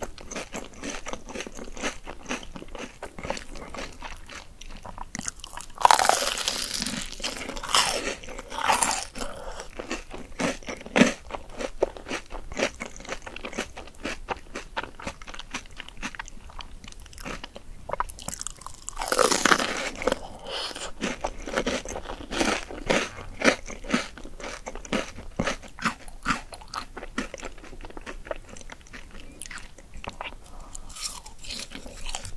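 Close-miked crunching and chewing of crisp deep-fried shrimp toast (menbosha): many sharp crisp bites and chews throughout, with two louder stretches of dense crunching about six and nineteen seconds in.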